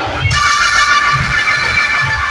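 Loud dance music blasting from a large truck-mounted DJ sound system, with low bass beats. A sustained high melodic line comes in just after the start.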